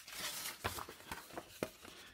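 Faint rustle of a sheet of paper being pressed and rubbed by hand onto a gel printing plate, with a few light clicks.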